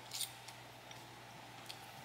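Faint sounds of eating cake with forks: a few soft, short clicks of fork on mouth or plate, the clearest just after the start, with quiet chewing.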